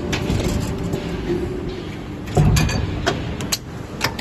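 Hydraulic injection molding machine running, with a steady low hum. A louder low clunk comes about two and a half seconds in, followed by a few sharp clicks.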